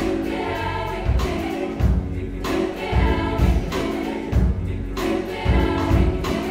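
Mixed choir singing a pop song in harmony, accompanied by piano, bass and a drum kit keeping a steady beat.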